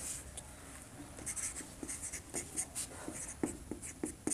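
Marker pen writing on a whiteboard: short scratchy strokes in quick runs with brief pauses between words.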